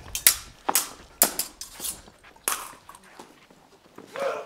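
Stage swords clashing in a staged fight: an irregular run of sharp metal clacks, most of them in the first two and a half seconds, then a few more sparse ones.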